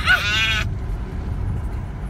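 A short, high-pitched quavering vocal sound from a person, about half a second long, followed by the steady low road rumble of a car heard from inside the cabin.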